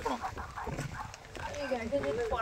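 Faint, quiet voices over a low outdoor background hum, much softer than the close-up speech just before.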